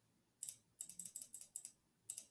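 Faint computer clicks: one click, then a quick run of about eight, each click stamping a brush mark in a painting program.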